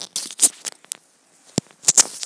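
Handling noise on a small clip-on microphone made from a headset mic glued to a mini clothespin: scrapes, rustles and sharp clicks as it is handled and clipped onto a shirt collar. It goes quieter briefly around the middle, and the loudest clicks come in the second half.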